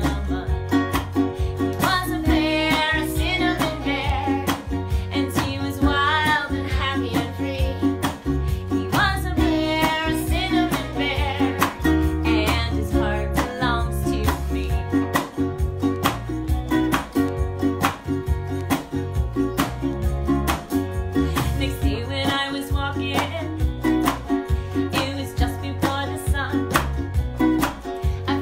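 A woman singing a children's song to her own strummed acoustic string accompaniment, sung in phrases over a steady strumming rhythm.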